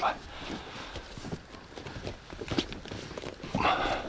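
Scattered light knocks and rustling from people shifting and climbing about inside an inflatable PVC boat, on its floor and seats.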